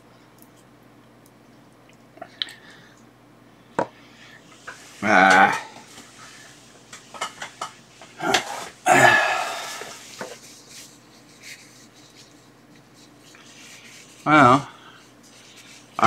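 Small objects being handled on a rubber workbench mat: a few sharp clicks and taps, a rustle of paper tissue, and short wordless vocal sounds in between.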